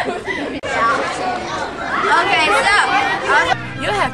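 Several young voices chatting over one another, with background music underneath. A low steady hum comes in near the end.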